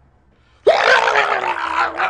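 A man's loud, rough yell, starting suddenly and lasting about a second and a half, its pitch jumping up at first and then sliding down.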